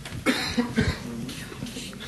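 A person coughing once near the start, followed by brief low voices.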